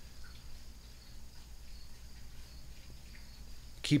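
Faint steady background hum and hiss of a recording's room tone, with no distinct event. A man's voice starts right at the end.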